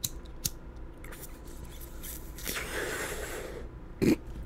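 A single faint click, then about a second of breathy hiss later on: a cigarette being lit with a lighter and smoke drawn in.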